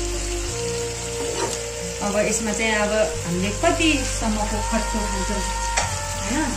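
Thick spiced masala with green chillies frying and sizzling in a pan while a spatula stirs it, with music playing over it.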